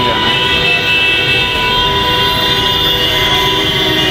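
Dense road traffic at a busy junction: a steady mass of car and motorcycle engines, with a long, steady high tone held over it that stops shortly before the end.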